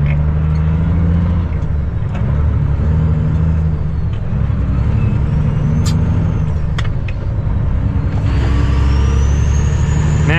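Cummins ISX diesel engine of a 2008 Kenworth W900L heard from inside the cab, running steadily as the truck moves through stop-and-go traffic. A faint high whistle rises and falls in the middle and climbs again near the end, with a few light clicks.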